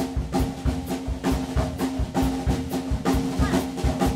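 Jazz drum kit playing a swing count-in on its own, sticks striking an even beat of about three strokes a second.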